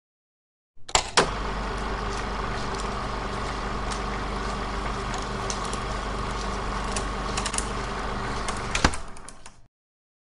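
A steady mechanical hum with a deep low drone, marked by sharp clicks or knocks about a second in and again near the end, starting and stopping abruptly.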